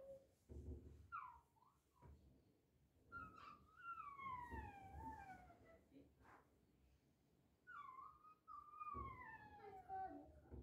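A faint, high-pitched voice in slow phrases that slide downward in pitch: a short one about a second in, then two long falling phrases, like a soft lullaby sung or hummed to a child.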